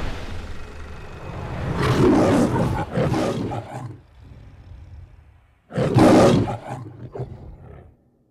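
The MGM studio logo's lion roars twice over a low rumble. The first roar comes about two seconds in; after a short quiet gap, a second, louder roar comes about six seconds in.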